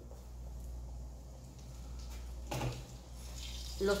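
Quiet kitchen background: a faint, steady hiss from the lit gas burner and the hot frying oil in the pan, over a low hum. There is one brief louder sound about two and a half seconds in.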